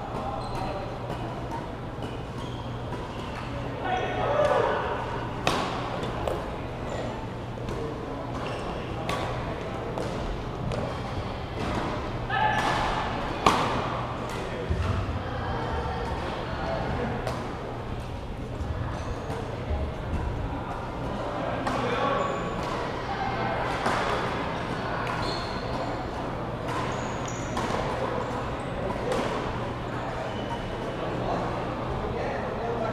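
Badminton rallies in a large sports hall: sharp racket hits on the shuttlecock at irregular intervals, the loudest about halfway through, with players' and onlookers' voices and a steady low hum from the building.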